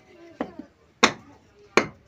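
Fired clay bricks knocked against each other as they are set into a stove base: a light knock, then two sharp, ringing clacks about two-thirds of a second apart.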